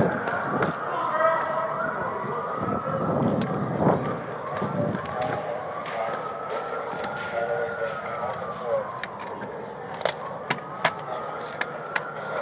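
Siren wailing, its pitch rising and falling slowly over several seconds, with faint voices beneath it. Sharp clicks and knocks from gear and movement come near the end.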